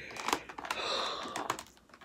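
Clicks and crinkles of a plastic-fronted cardboard box being handled and turned over, with a short spoken "oh".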